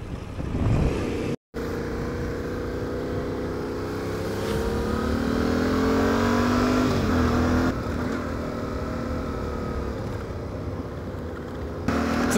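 Yamaha Ténéré 700's parallel-twin engine running as the motorcycle accelerates on a gravel road, its pitch rising from about four seconds in and dropping back near eight seconds, over a steady rush of road and wind noise. The sound cuts out completely for a moment about a second and a half in.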